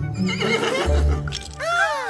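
Background music with a horse whinnying over it. The whinny is a pitched call that rises and falls near the end.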